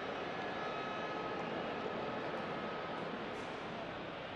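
Steady, faint stadium ambience from the match broadcast sound: an even hiss with no distinct events.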